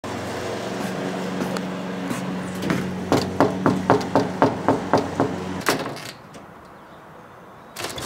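Knuckles rapping quickly on a wooden screen-door frame, about nine knocks at roughly four a second, over a steady low motor hum that stops shortly after the knocking. Near the end comes a short clatter as the screen door is opened.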